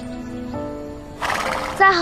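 A horse blows a short, noisy breath a little over a second in. Near the end it begins a wavering neigh, over soft background music.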